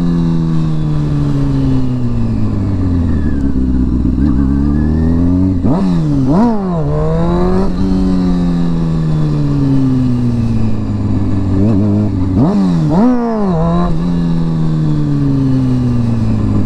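Honda CBR sport bike engine running loud, winding down slowly as the bike rolls off, then revved sharply twice, about six and thirteen seconds in, each time climbing fast and dropping straight back. These are throttle bursts for wheelie practice.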